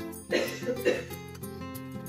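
Background music with a steady beat. About half a second in, a person coughs in two short bursts.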